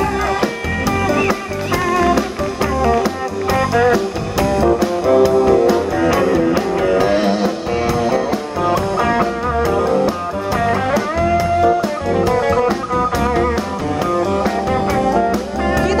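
Live band playing instrumentally: electric guitar playing melodic lines with bent notes over bass guitar and a drum kit keeping a steady beat.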